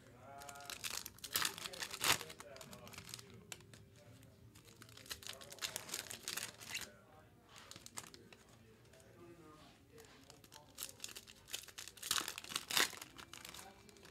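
Foil trading-card pack wrappers crinkling and tearing as 2023 Topps Chrome Update packs are ripped open, in short sharp bursts with quieter rustling between.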